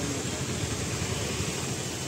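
A vehicle engine idling with a steady low rumble.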